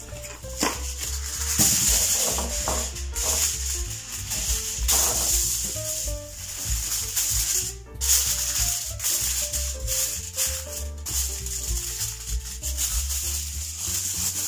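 Aluminium foil crinkling and rustling in irregular bursts as a sheet is smoothed and crimped by hand over a ceramic tart dish, with soft background music underneath.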